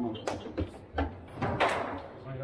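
Table football in play: a few sharp knocks of the ball against the plastic figures and table, with the loudest, longer clatter about one and a half seconds in.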